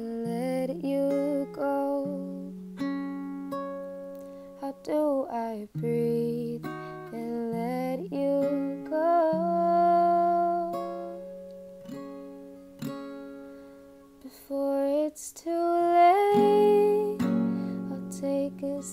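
Acoustic guitar playing a slow chord progression, each chord ringing out before the next.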